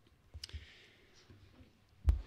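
A single short click as the presentation slide is advanced at the lectern, then quiet room tone.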